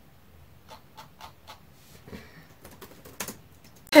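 Quiet, irregular clicks of typing on a laptop keyboard, a few keystrokes at a time.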